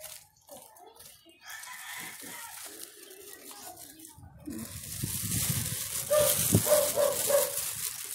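A plastic bag rustling and crinkling as it is handled, getting louder from about halfway. Inside the bag, very young kittens give a run of short, repeated mews near the end, about four a second.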